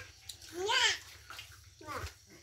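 A young child's brief high-pitched vocal call, rising then falling in pitch, about half a second in, with a short voice sound starting near the end.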